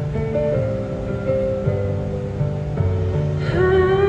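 Recorded backing music playing a slow song intro: a stepping bass line under sustained keyboard notes. Near the end a singer's voice comes in through the microphone, sliding up into a long held note.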